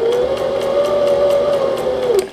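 Brother MZ53 sewing machine running forward, its motor whining up to speed at the start and holding a steady pitch under faint, even needle ticks, then winding down at the very end.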